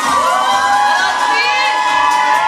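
A crowd of party guests, mostly women, cheering and shouting with long held high calls while dancing, over a steady low dance beat.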